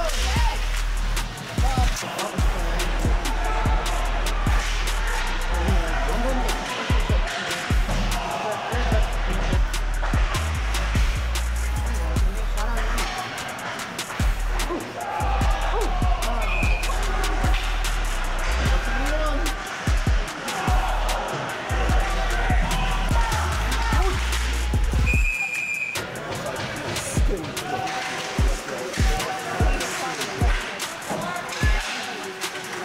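Ice hockey game sound at the rink: repeated sharp clacks and knocks of sticks and puck, with voices and music mixed in throughout.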